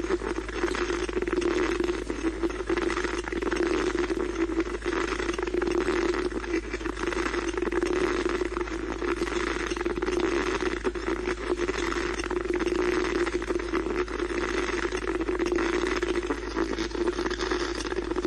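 Steady static hiss with a wavering hum underneath, from electronic audio equipment being listened to for a spirit's reply.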